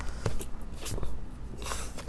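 Faint rubbing and a few light taps of hands and a small tool working a sheet of heat-transfer vinyl flat on a plastic cutting mat, over a low room hum.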